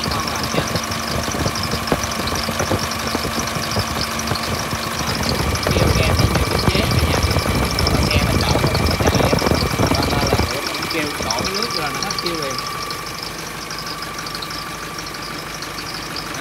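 Nissan diesel engine of a Veam truck running, with a steady high-pitched whine from the drive belt: the belt squeals a little, which the seller says goes away once water is splashed on it. The engine grows louder and deeper from about five seconds in, then drops back to idle about ten seconds in.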